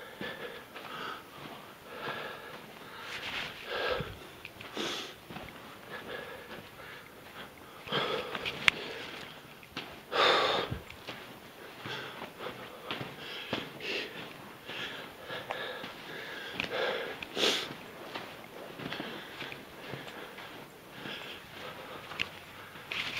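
A man breathing and sniffing at a strong smell, a run of short breaths and sniffs with the loudest about halfway through, with scuffing steps on rock.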